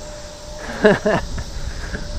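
Wind and tyre noise from a road bike rolling along a paved path, with the rider's voice sounding briefly about a second in.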